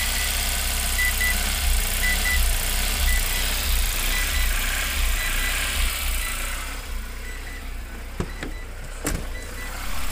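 Tata Nano's small two-cylinder engine idling with a low rumble, while the instrument cluster gives short high beeps about once a second. The beeping is the warning that keeps sounding with the red overheating lamp. Near the end it gets quieter, with a couple of knocks.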